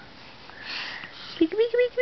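A breathy sniff about half a second in, followed by a high sing-song voice cooing 'Pika, Pika' at a baby.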